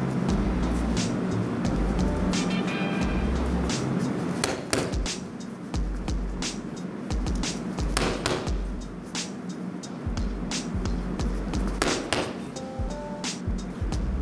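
Gloved jabs landing on a heavy punching bag: sharp smacks a few seconds apart, over background music with a steady bass beat.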